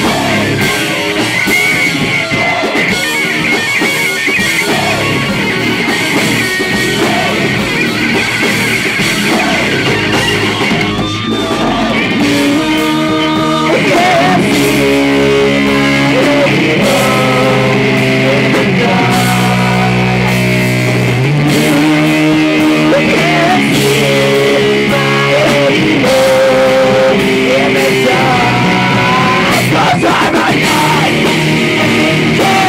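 Live rock band playing: distorted electric guitar and drums with a singer's vocals. About twelve seconds in the band gets louder and moves to long held chords.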